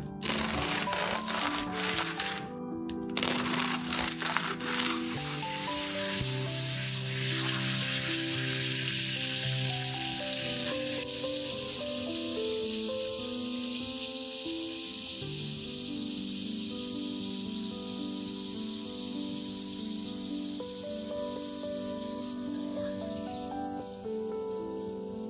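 A knife saws through a crusty baguette with a few crackling strokes. From about five seconds in, slices sizzle steadily in hot oil in a frying pan. The sizzle gets louder about halfway through and eases off near the end, with background music running throughout.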